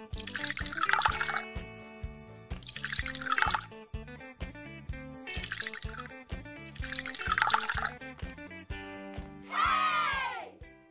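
Background music with a steady beat, over which a liquid pouring sound recurs about every two seconds as a syrupy gelatin mixture is poured from a plastic bowl into a silicone gummy-bear mould. A descending sparkle chime sounds near the end.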